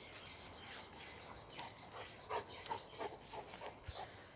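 Dog-training whistle blown in a fast run of short, high, even blasts, about eight a second, stopping about three and a half seconds in: the recall ("come") signal the dog has been trained to answer instead of a spoken call.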